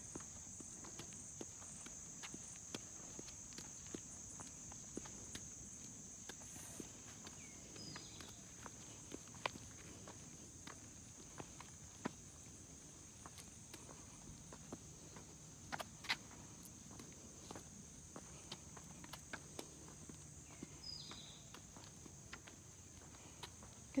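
A toddler's sneakers tapping and scuffing on concrete as he pushes a balance bike along with his feet, an irregular run of soft footsteps. A steady high insect buzz runs underneath.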